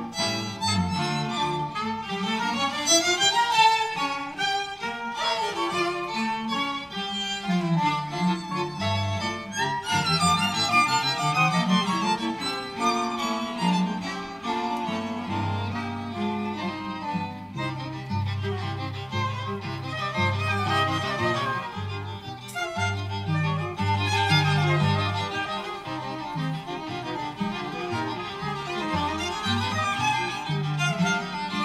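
String quartet playing a chamber piece that blends jazz and classical writing, with bowed violins carrying the lines. From about the middle on, the cello holds long low notes under them.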